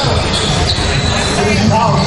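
A race caller's voice and room chatter echoing in a large hall, with a faint thin high whine running through.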